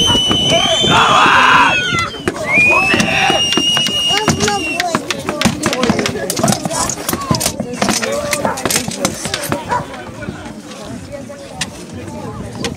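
Sword blows knocking on round wooden shields in a reenactment duel, a rapid run of sharp strikes through the middle of the stretch, over crowd chatter. In the first few seconds two long high-pitched cries ring out over the noise.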